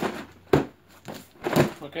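Cardboard box being handled and set down on a wooden workbench: a sharp knock about half a second in, then more knocks and scuffing of cardboard.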